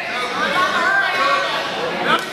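Several voices talking over one another in a large gym hall: onlookers chattering and calling out during the match.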